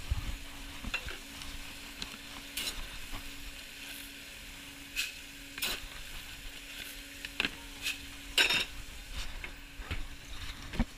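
Restaurant kitchen ambience: a steady hum and hiss with scattered clatters and clicks of trays and utensils, the loudest about eight and a half seconds in.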